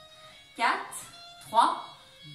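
A woman's voice counting down ("four") over faint background music.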